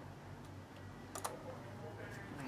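A couple of faint small clicks just after a second in, over a low steady hum, as hands handle the bike's wiring and plastic connectors.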